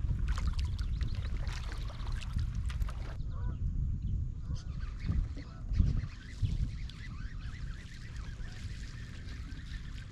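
Kayak paddle strokes with water dripping and splashing for the first three seconds. Then, after a cut, birds call repeatedly over a steady low rumble, with two dull bumps around the middle.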